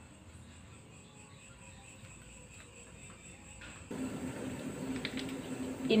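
Faint room tone, then after about four seconds a low steady hum with a few crinkles of a plastic margarine packet being handled.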